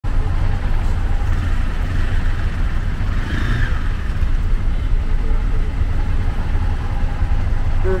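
Road traffic halted at a signal: auto-rickshaw and car engines idling in a steady low rumble.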